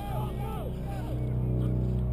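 Faint, distant shouts of players on a field, a few short calls in the first second, over a steady low rumble.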